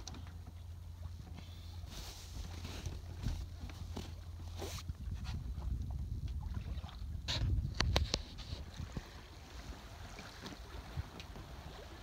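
Wind rumbling on the microphone and water washing past the hull of a Hunter 40.5 sailing yacht running under sail with its engine off. A few sharp clicks come about two thirds of the way in.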